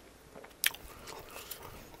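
Close-miked mouth sounds of a person chewing, with one sharp wet smack about two-thirds of a second in and a few softer clicks after it.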